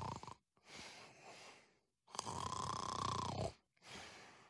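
An old man snoring in his sleep, performed for a cartoon: a short snore at the start, a weaker one about a second in, and a longer, stronger snore about two seconds in.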